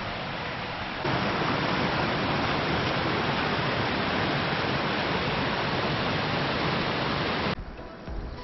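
Waterfall pouring onto rocks: a steady, loud rush of falling water that starts suddenly about a second in and cuts off abruptly near the end, after a softer steady hiss.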